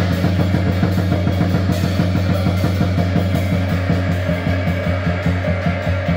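Drum kit played with sticks in a blues groove, drums and cymbals struck several times a second, over a backing with a steady low bass note and guitar.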